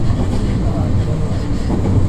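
Steady running rumble of a commuter train in motion, heard from inside the passenger car.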